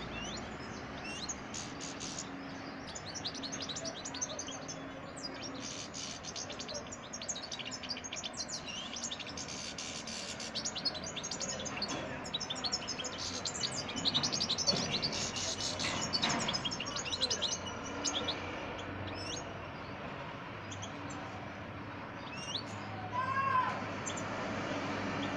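Young European goldfinch singing in a cage: a long run of rapid twittering and trilling chirps, busiest through the middle and thinning out over the last few seconds.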